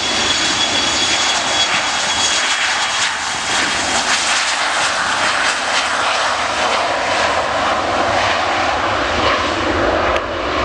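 Embraer Legacy 500 business jet's twin turbofan engines running as it taxis along the runway: a steady jet rush with a thin high whine that fades out after the first few seconds.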